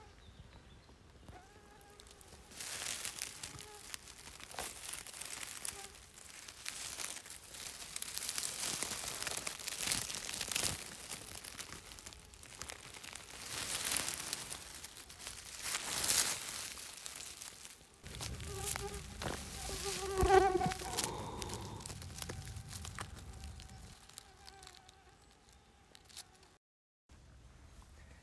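Close rustling and crunching of dry leaf litter and grass, swelling and fading several times as a hand works among porcini mushrooms to pick them. Later an insect buzzes near the microphone, loudest about twenty seconds in.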